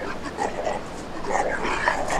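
Several short whimpering, dog-like cries in quick succession, each bending up and down in pitch.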